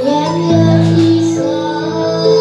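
A boy singing a slow ballad live into a microphone, holding long notes, with an electric keyboard playing sustained chords beneath him.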